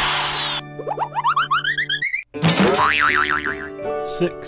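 Cartoon sound effects over children's background music. A falling whoosh fades in the first half-second, then a quick run of short rising boings climbs higher and higher, the sound cuts out briefly, and a wobbling boing follows.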